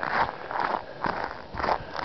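Footsteps crunching in snow, about two steps a second.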